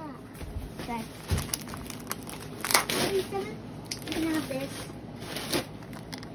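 Newspaper and plastic packing material crinkling and rustling as it is handled, in irregular crackles with a louder one near the middle.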